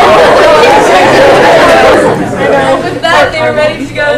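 Many girls' voices chattering at once in a large room. About halfway through, one voice rises clearly above the rest.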